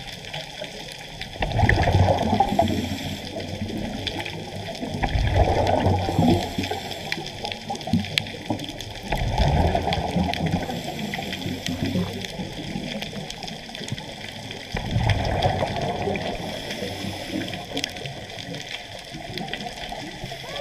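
Scuba diver's regulator heard underwater: four bursts of exhaled bubbles a few seconds apart, with faint breathing hiss between them.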